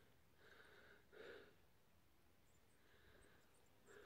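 Near silence: faint outdoor background with one brief, soft sound about a second in.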